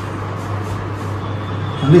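A steady low hum with an even hiss behind it: the room tone of the shop. A voice starts speaking near the end.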